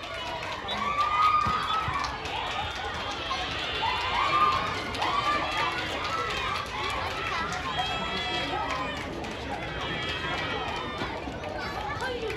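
Many young voices calling out and chattering at once, mixed with spectators talking: the excited hubbub of a youth football crowd after the final penalty of a shootout.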